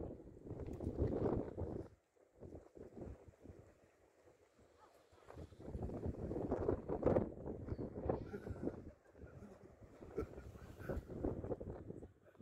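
Wind buffeting the microphone in uneven gusts, dropping away sharply about two seconds in and picking up again past the middle.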